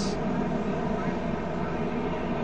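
Steady low drone of stock-car engines in the distance, the field running slowly under caution, with no sudden events.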